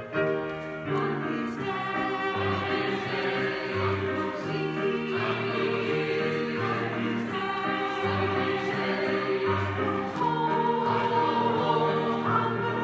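Church choir singing a song with music behind it.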